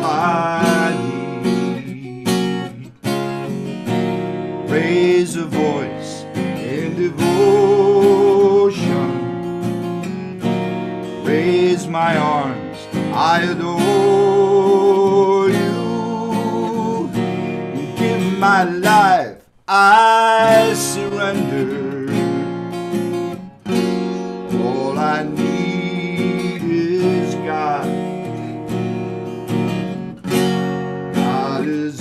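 A man singing to his own strummed acoustic guitar, with a brief break in the music about two-thirds of the way through.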